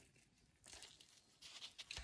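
Near silence, with a few faint rustles in the second half.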